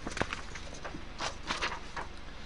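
A few soft, short clicks and taps over a low steady room hum, in a cluster near the start and another a little past the middle.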